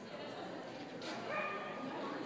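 A dog barking: one sharp, drawn-out bark or yelp about halfway through, holding its pitch for nearly a second.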